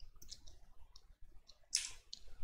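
Computer keyboard keys being typed: a few sparse, faint keystroke clicks, the loudest near the end.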